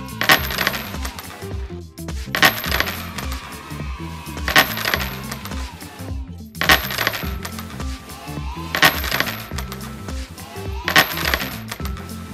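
Background music with a steady low bass pattern. A bright, ringing transition sound effect strikes about every two seconds, six times in all.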